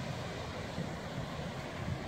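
Strong sea wind blowing across the microphone: a steady rushing noise with low buffeting rumble.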